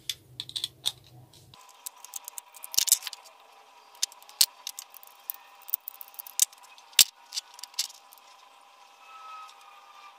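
Irregular sharp clicks and taps of a plastic mains plug being opened and handled with a screwdriver on a wooden tabletop.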